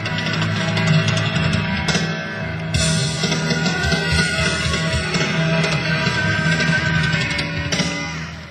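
A live country-rock band playing an instrumental passage, with guitar to the fore over drums.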